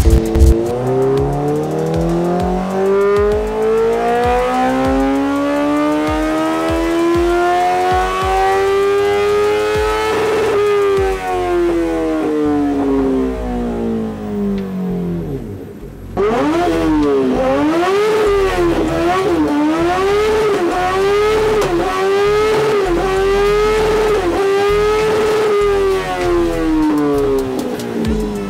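Honda CBR1000RR inline-four superbike engine, through an aftermarket slip-on exhaust, pulling up through its revs in one long steady rise of about ten seconds on a dyno run, then winding down. After a short dip it comes back revving, the pitch wavering up and down about once a second, and falls away near the end.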